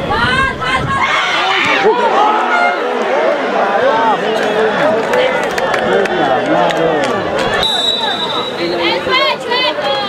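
Many voices shouting and calling over one another: players and onlookers at a football match. A brief high steady tone sounds about eight seconds in.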